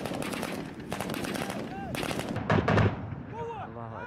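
Rapid bursts of small-arms gunfire, the loudest burst a little before three seconds in, followed by men's voices calling out near the end.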